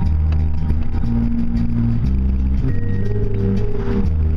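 A car driving along a road, its low engine and road drone running under music with sustained low chords that change about once a second.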